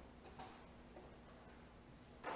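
Near silence with a faint steady hum, broken by a light metallic tick about half a second in and a fainter one a second in, as the metal bell of a candle snuffer settles over an altar candle's metal cap to put it out.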